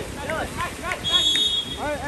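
Water polo referee's whistle: one short, steady, high blast about a second in, over people shouting.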